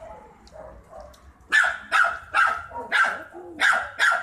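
Dog barking: a run of about five short, sharp barks, roughly two a second, starting about a second and a half in.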